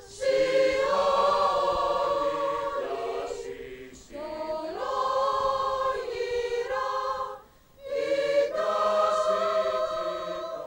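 Choral music on the soundtrack: a choir singing long held notes in phrases, breaking off briefly about four seconds in and again just before eight seconds.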